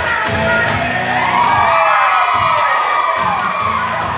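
An audience cheering and whooping loudly over stage music, the cheer swelling through the middle and easing near the end.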